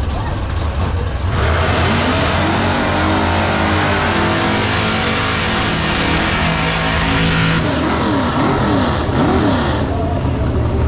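Drag cars doing burnouts. After a low idling rumble, an engine revs high about a second in with a loud hiss of spinning rear tyres, its pitch rising and then holding. Near the end the revs swing rapidly up and down before the tyre hiss stops.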